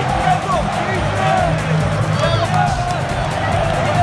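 Music playing over crowd chatter, with many voices talking and calling out at once.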